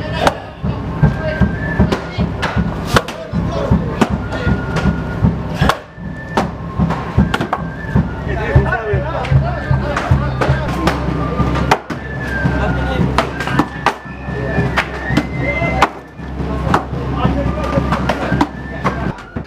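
Axes splitting eucalyptus logs, with many overlapping strikes throughout. Music plays over them, carrying a high piped melody.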